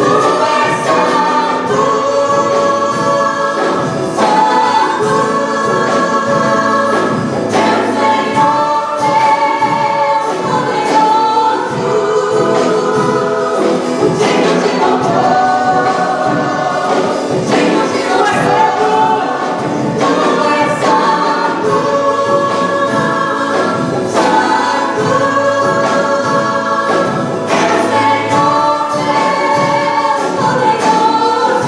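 A gospel worship band performing live: a group of women singing together into microphones, backed by a drum kit and band.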